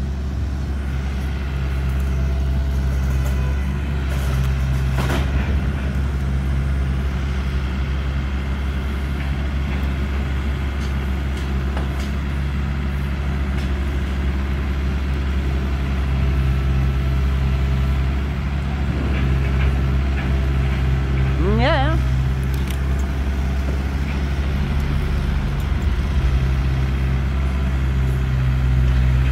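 A diesel engine running steadily at a low idle, from the mini excavator working on the canal pontoon. About three quarters of the way through, one brief rising tone sounds over it.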